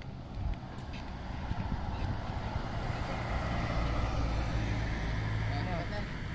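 A road vehicle driving past: a low engine and tyre rumble that swells to its loudest a few seconds in, then eases off.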